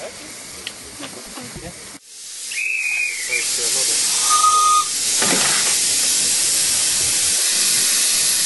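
Miniature live-steam locomotive modelled on a Midland 4-4-0 Compound. About two seconds in, steam hiss builds up and two short whistle notes sound, the first higher than the second. The hiss then runs on loud and steady.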